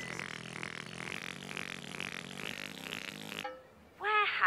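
Sound effect of a Teletubbies voice trumpet rising up out of the ground: a steady rushing noise with a low hum beneath, cutting off about three and a half seconds in.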